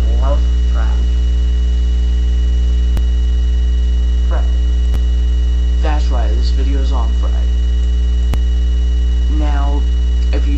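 Loud, steady low electrical mains hum in the recording, with a few brief untranscribed vocal sounds from a person close to the microphone.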